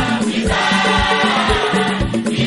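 Gospel song: a choir sings held notes over a steady drum beat of about two beats a second.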